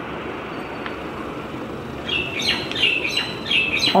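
Small birds chirping in the background: a quick run of short, high chirps starting about halfway through, over a steady hiss of room noise.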